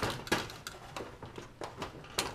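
Light clicks and clatter of hands handling a sheet-metal high bay light fixture: several short, unevenly spaced knocks.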